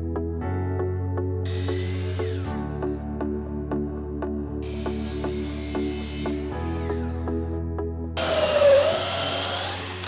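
Background music with a steady beat, over three separate cuts of a Ridgid miter saw through pressure-treated southern yellow pine boards. The last cut, near the end, is the loudest.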